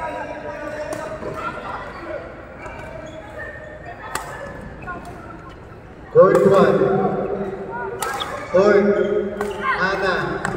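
Badminton rackets striking a shuttlecock in a rally: sharp cracks a second or two apart. Loud voices come in from about six seconds in.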